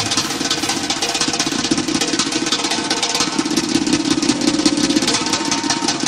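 Fast, dense drum roll from a group of hand drummers: an unbroken rumble of rapid hits with no kick-drum beat under it.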